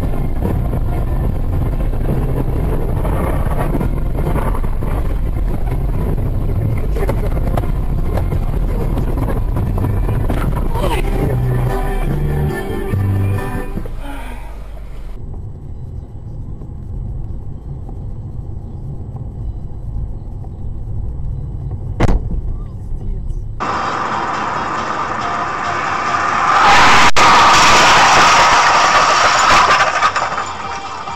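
Car cabin noise from a dashcam: a steady, heavy low rumble of engine and tyres on a snowy road for about the first half. After a cut it drops to a quieter hum with one sharp click, then a louder stretch of some other sound near the end.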